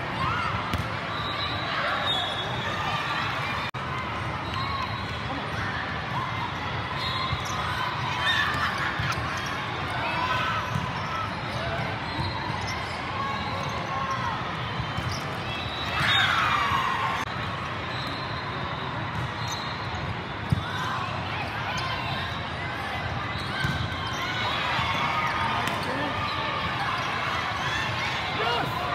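Crowded volleyball tournament hall: many overlapping voices of players and spectators, with volleyballs being hit and bounced across the courts, and one sharp smack about twenty seconds in. The big hall makes it all echo.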